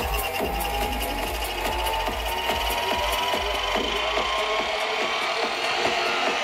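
Psytrance played loud over a festival sound system: a driving electronic beat with deep bass, and a synth tone that rises slowly throughout. The deep bass drops away about four seconds in while the rising tone keeps climbing, a build-up in the track.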